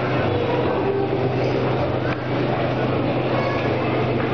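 Steady low machine hum from the rotating 360-degree flight simulator capsule's drive, with a faint murmur of voices behind it.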